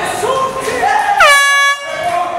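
A horn sounds once near the end, one loud steady blast of about half a second that drops slightly in pitch as it starts and then cuts off sharply. Shouting voices from the crowd come before it.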